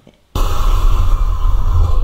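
The opening of a recorded track played on air: a loud, steady, bass-heavy noise that cuts in suddenly about a third of a second in.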